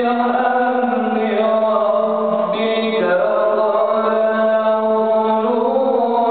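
A man reciting the Quran in the melodic chanted style, holding long sustained notes in one unbroken phrase.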